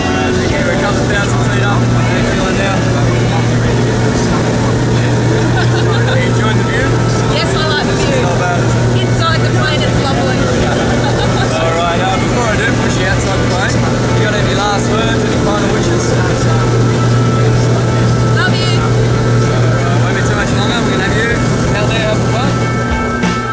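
Twin-engine jump plane's engines running, heard as a steady drone inside the cabin during the climb, with people talking and calling out over the noise.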